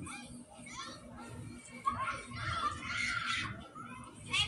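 Children's voices talking and calling out, faint and small-sounding, played back through a phone's speaker.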